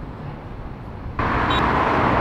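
Low street-traffic noise, then about a second in a sudden step up to a much louder car engine with a steady low rumble: a Mercedes-AMG GT roadster's twin-turbo V8 driving toward the microphone.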